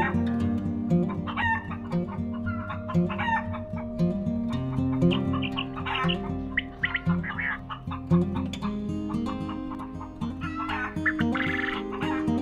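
Chickens clucking in short repeated calls, with a longer rooster crow near the end, over upbeat acoustic guitar music.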